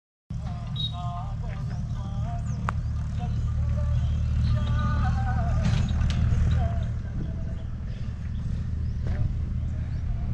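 Steady low rumble of wind on the microphone, with a few faint, quavering bleats from a resting flock of sheep scattered through it.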